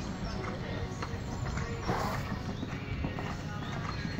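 Hoofbeats of a stallion cantering on a sand arena surface, with one louder sound about halfway through.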